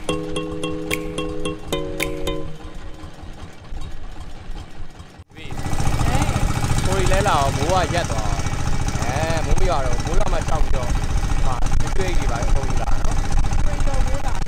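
Background music with held chords and light ticking notes, cutting off about five seconds in. Then the loud, steady running of a boat's outboard engine, with voices over it.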